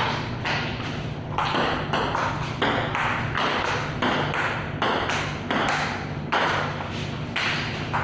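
Table tennis rally: the ball is struck back and forth, clicking off paddles and the table in a steady rhythm of about two hits a second.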